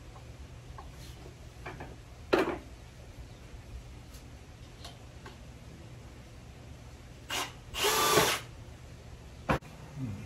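Cordless drill driving a screw into a wooden board: a short blip, then a run of about half a second near the end. A sharp knock comes earlier, and a click just before the end.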